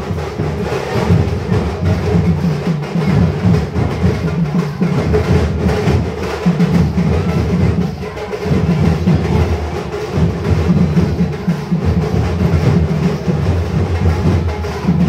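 A Sambalpuri dulduli folk band drumming fast and continuously, with deep drum strokes, with a brief lull about eight seconds in.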